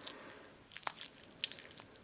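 Faint wet crackles and small clicks of a slime-like jelly soap being squeezed and pulled apart in the hand, with a few sharper ticks about a second in.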